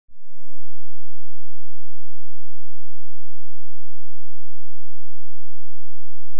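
A steady high-pitched electronic tone, with a short low burst at the very start and a few faint low knocks.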